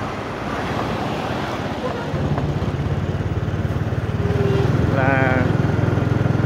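Motorbike engine running at road speed with wind and road noise rushing over the microphone. The engine hum grows louder about two seconds in and again near four seconds as it picks up.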